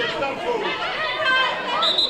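Several voices on the pitch and sideline calling and talking over one another, with a short high whistle blast near the end.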